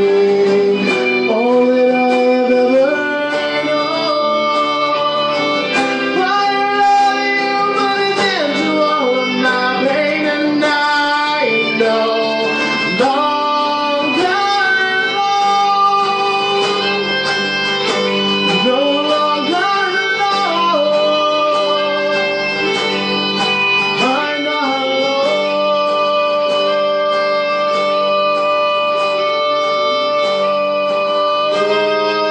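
Live band music: acoustic-electric guitar strummed under a violin playing long, gliding lines, with a male voice singing over them.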